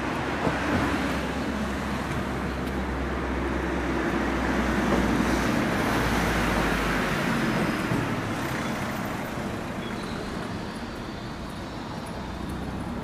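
City street traffic: a passing vehicle's engine and tyre noise swells to its loudest about halfway through and then fades.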